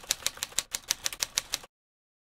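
Rapid typing key clicks, about seven a second, keeping time with text being typed out on screen. They stop suddenly about a second and a half in, once the address is complete.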